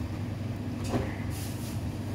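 Low steady hum of a refrigerated display case, with a single click about a second in and a short rustle of a cardboard cheese box being handled.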